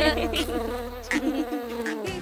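Cartoon bee buzzing, wavering up and down in pitch, over a steady low tone that stops about one and a half seconds in.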